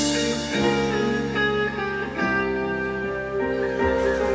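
Band music led by an electric guitar, with held chords that change every second or two.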